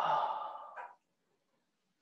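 A person's breathy sigh, one out-breath lasting about a second and fading away.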